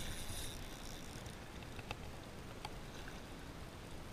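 Seawater washing and lapping against the rocks of a breakwall, with wind on the microphone and a couple of faint clicks in the middle.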